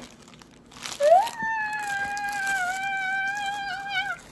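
A quiet second, then one long, high, voice-like note that rises at its start and is held with a slight waver for about three seconds.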